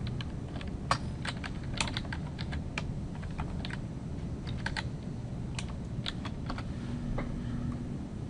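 Typing on a computer keyboard: irregularly spaced keystrokes as a short label name is typed in.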